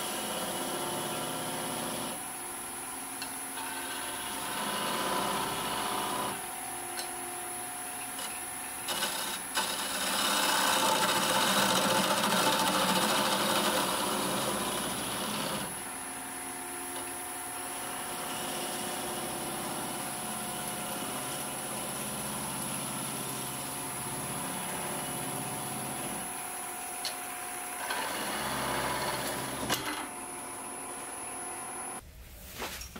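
Wood lathe running with a steady hum while a narrow turning tool scrapes and cuts into a spinning wooden spindle, parting a spatula handle off at its thin neck. The cutting comes in several passes, loudest about ten to fifteen seconds in, with a few sharp clicks just before.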